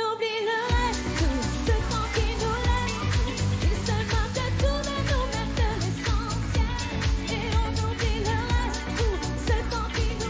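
French dance-pop song with a woman singing lead over a thumping bass and drum beat. The bass and drums come in just under a second in, after a quieter passage.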